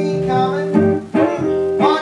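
A man singing a jazz song, accompanied by chords on a hollow-body archtop guitar.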